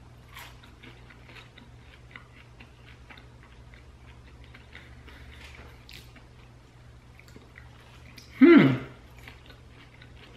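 A person chewing a crispy crinkle-cut fry: faint crunching and mouth clicks. About eight and a half seconds in there is one short, loud voiced sound from the eater.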